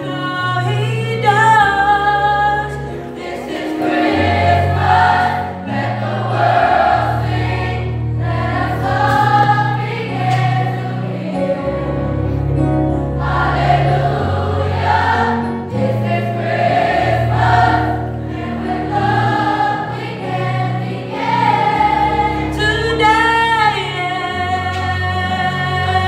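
Youth choir singing a slow gospel-style Christmas song, the voices holding long wavering notes over an accompaniment of low bass notes that change every second or two.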